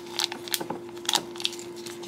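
Dried tapioca pearls shaken from a plastic packet into a drinking glass: a few scattered light clicks and crackles as the pearls and packet move.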